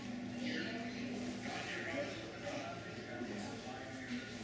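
Indistinct voices of people talking in a large room, with a low steady hum that stops about a second and a half in.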